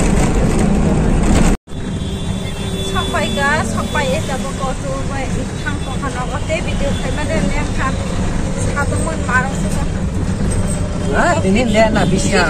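Bus ride noise heard inside the cabin: a dense engine and road rumble. It breaks off abruptly about a second and a half in. It is followed by steadier, slightly quieter engine hum and rattle from inside a three-wheeler rickshaw, with people talking over it.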